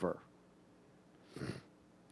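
A man's short intake of breath, picked up close on a headset microphone, about one and a half seconds in, after the tail of a spoken word at the very start.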